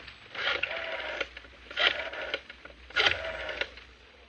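A rotary telephone dial being dialed: each digit is a sharp click as the dial is pulled round, then a short run as it spins back. Three digits come about 1.2 seconds apart.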